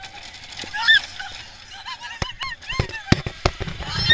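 Roller coaster riders shrieking in many short, arching whoops, with a few sharp clacks from the ride in the second half and a louder shriek at the very end.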